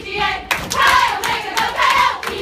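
A group of women singing together in unison, with rhythmic hand claps.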